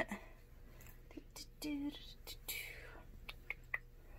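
Soft rustling of a fleece-and-fur hood being lifted overhead and handled, with faint whispered muttering and a brief voiced sound just before the middle. A few small clicks follow near the end.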